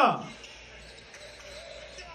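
Faint sounds of a basketball game in a gym: a ball bouncing on the court, heard under the tail of a man's exclamation at the start.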